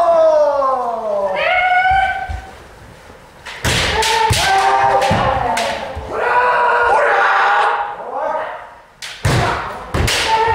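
Kendo kiai: long, drawn-out shouts from several fencers, the first sliding down in pitch, mixed with sharp bamboo shinai strikes on armour and thuds of stamping feet on the wooden dojo floor. The loudest cracks come about three and a half seconds in and again just before the end.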